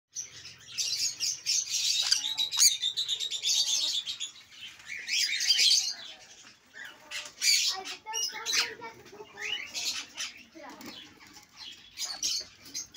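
A group of sun conures calling: harsh, raspy screeches and chattering in repeated bursts, most sustained through the first four seconds, then in shorter outbursts.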